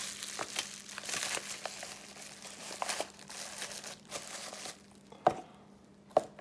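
Bubble wrap around a bundle of push rods crinkling and crackling as it is handled, dying down after about four and a half seconds, with one sharp tap near the end.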